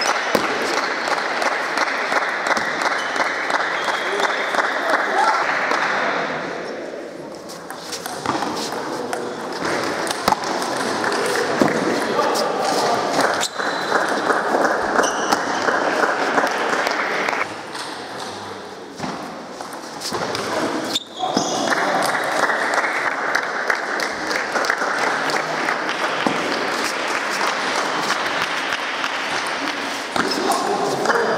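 Table tennis balls clicking sharply off bats and tables, from several rallies at once in a large echoing sports hall, over a steady hubbub of many voices.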